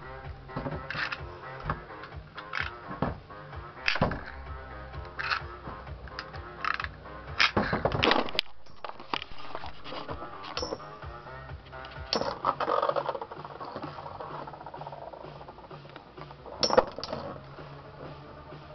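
Two metal-wheeled Beyblades, Blitz Striker 100SF (attack) and Gravity Destroyer AD145W2D (defense), spinning in a plastic Hades Gate Beystadium. They clash in irregular sharp metallic clacks and rattles, with heavier hits about halfway through and again near the end, over background music.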